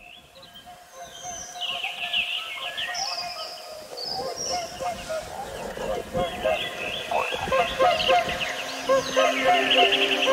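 Calm music fading in from silence with birdsong laid over it: many short chirping and trilling calls above sustained low notes, growing louder throughout.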